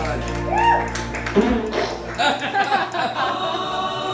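Karaoke backing track's final held chord, with voices of the bar crowd over it. The music cuts off suddenly about a second and a half in, and the crowd's voices and chatter carry on.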